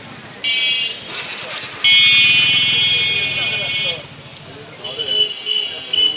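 Vehicle horns honking in street traffic: a short blast about half a second in, a long one of about two seconds, and a shorter one near the end.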